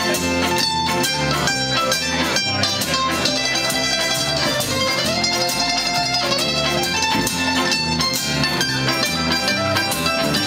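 Live bluegrass band playing an instrumental break with no singing: upright bass keeping a steady pulse under acoustic guitar and mandolin.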